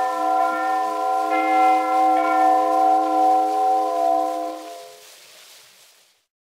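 The final held chord of a 1919 acoustic-era 78 rpm shellac record, with a new chord struck about a second in. It dies away near the end, leaving the record's surface hiss before the sound stops.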